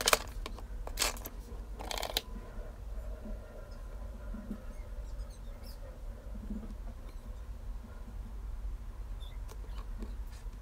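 Handling sounds of an iPhone X on a work table: a sharp tap near the start as the phone is set down, two more knocks about one and two seconds in, then quiet rubbing and handling as a cloth wipes its glass back.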